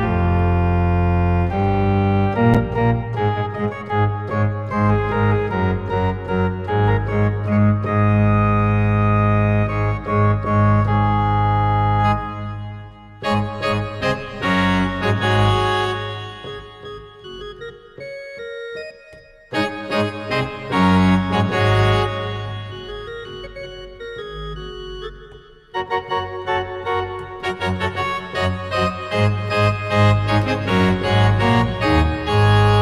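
Sampled pipe organ from an iPad organ app played from a MIDI keyboard: sustained hymn-style chords, full and loud at first. About halfway through it drops quieter with two short breaks as the registration changes, then swells back to full near the end.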